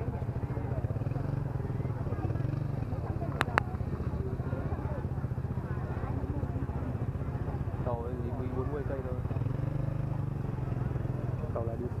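Low, steady hum of idling motorbike engines under the chatter of a waiting crowd, with a sharp double click about three and a half seconds in.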